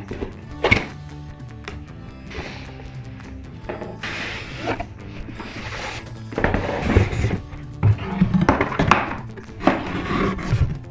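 Background music with steady low notes over cardboard packaging being handled: a thunk of the box early on, a rustle and slide of cardboard as the lid comes off, and several knocks of cardboard boxes against each other and the table in the second half.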